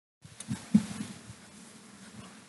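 Handling noise from a handheld microphone being picked up and raised: three dull, low bumps within the first second, the loudest about three quarters of a second in, then faint low background noise.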